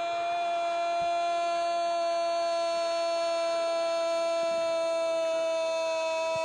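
A football commentator's long drawn-out 'gooool' goal cry, one unbroken note held at a steady pitch.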